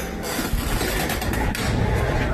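Outdoor street noise with a loud, uneven low rumble on the phone's microphone as the glass shop door is pushed open and the phone is carried outside, with a few light clicks about a second in.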